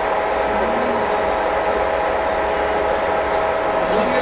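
Large universal engine lathe running under power, its gears giving a steady whine at a constant pitch over a mechanical drone.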